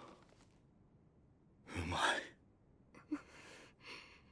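A person's breathy sigh about two seconds in, followed by a few fainter breaths near the end.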